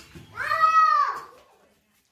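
One drawn-out, meow-like animal call, rising and then falling in pitch, lasting just under a second from about a third of a second in.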